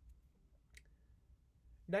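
A pause in speech with low background noise and one faint, short click about three quarters of a second in; a man's voice starts again at the very end.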